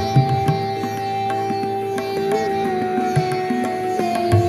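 Live pop band playing an instrumental passage between sung lines: two long held notes that step down slightly past the middle, over a steady bass and light percussion.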